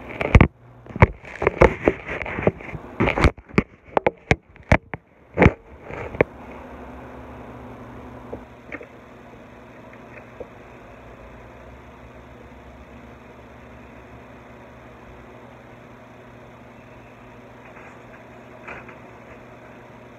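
Handling noise from a phone being gripped and set down: a rapid string of knocks and rubs right on the microphone for the first six seconds or so. After that comes a faint, steady low hum of room tone.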